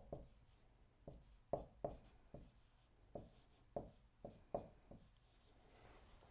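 Dry-erase marker writing on a whiteboard: a faint series of about ten short, separate strokes as a limit expression is written out.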